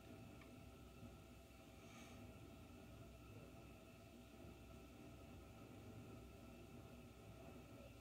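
Near silence: room tone with a faint steady hum.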